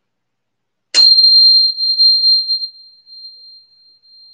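A tuning fork struck once about a second in, ringing one pure, very high tone that slowly fades away over the next few seconds.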